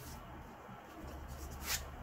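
A tarot card drawn out of a deck fanned on a tabletop, one short papery swish near the end.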